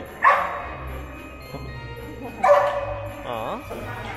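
A dog barks once, loud and sharp, about two and a half seconds in.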